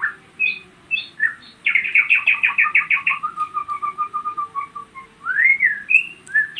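A songbird singing: scattered chirps and whistles, a fast trill of rapid notes about two seconds in running into a slower, falling string of notes, then a rising-then-falling whistle near the end.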